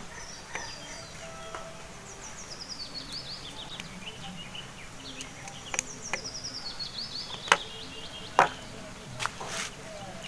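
A few light, sharp clicks of a small screwdriver and wires being handled at a DC-DC buck converter's screw terminals, over a quiet outdoor background. Twice, a bird gives a descending run of high chirping notes.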